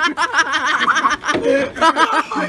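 A person laughing hard in a fast run of short ha-ha's. The laugh breaks off briefly about a second and a quarter in, then the voice picks up again.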